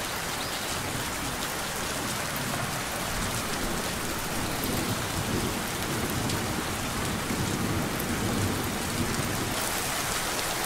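Steady rain falling on leaves, an even hiss, with a low rumble swelling up about halfway through and easing off near the end.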